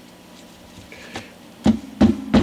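Small hammer tapping to knock the glued nut out of a 12-string electric guitar's neck: two light taps, then a sharp loud strike near the end followed by a low ringing.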